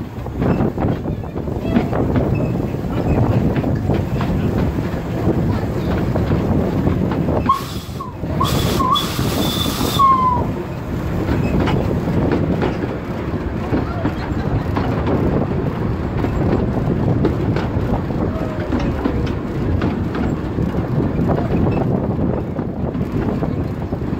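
Narrow-gauge train hauled by a Decauville 0-4-0 steam locomotive running along the line, heard from aboard: the wheels clatter over the rail joints under the engine's steady running noise. About eight seconds in, a shrill wavering tone over a hiss lasts two seconds or so.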